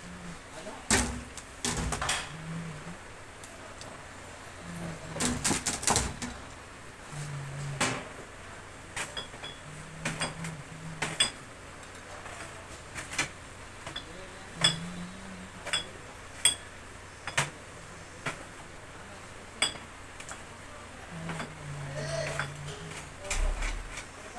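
Irregular clicks and knocks of packaged goods being handled and set down on shop shelves, with a louder clatter twice in the first quarter and then a sharp tap every second or so.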